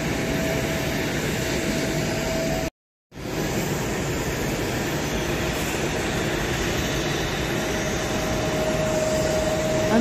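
Steady rumble and whine of a Boeing 787 airliner's engines during pushback, heard across the apron. The sound cuts out briefly about three seconds in.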